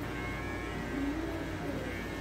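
Steady low hum in a room, with a faint voice in the background about a second in.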